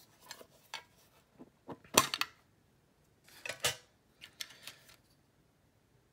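Small metal Pokémon mini tin being prised open and its contents handled: a string of sharp metallic clicks and clanks, the loudest about two seconds in, with a short rattling cluster a little after three seconds.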